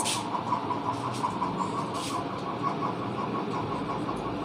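A marker writing on a whiteboard in a few short strokes, over a steady engine-like hum in the background.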